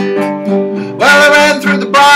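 Acoustic guitar strummed in a steady folk rhythm, with a man's singing voice coming in over it about a second in.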